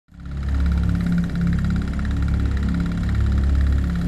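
Low, steady rumbling drone of a dark intro sound effect, swelling up out of silence in the first half second, with a fainter thin hum running above it.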